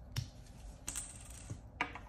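Plastic flip-off caps being popped off small glass medication vials by gloved fingers: a few faint, sharp clicks, the second followed by a soft hiss.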